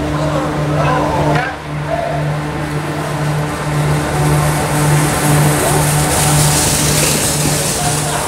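Inflatable snow tube sliding down a snow slope: a hiss that swells over the second half. Under it runs a low hum that pulses about twice a second, and voices are heard in the first second or so.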